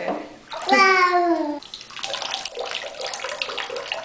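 Bathwater in a filled tub splashing and running, an even watery wash with small irregular splashes through the second half.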